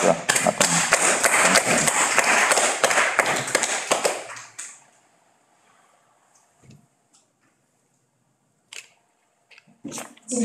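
Audience applauding, a dense patter of many hands that dies away after about four and a half seconds. A few faint knocks follow near the end.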